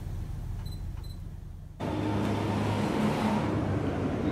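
A faint low hum, then about two seconds in a sudden switch to a louder, steady rushing background noise with a low hum under it.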